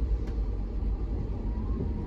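Steady low rumble of a car driving, engine and tyre noise on a wet road heard from inside the cabin.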